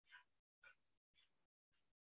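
Near silence, broken by four very faint, short sounds about half a second apart, each cut off abruptly.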